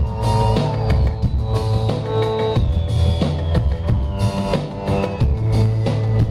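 Live rock band playing, with drum kit and bass keeping a steady beat under sustained higher instrument tones, recorded from inside the crowd.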